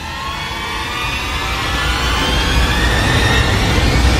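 A cinematic riser sound effect: a dense drone of many tones gliding slowly upward in pitch over a deep rumble, growing steadily louder.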